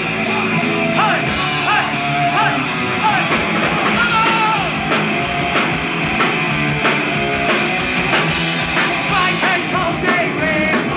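Punk rock band playing live and loud: distorted electric guitar, bass and drum kit, with a singer's vocals.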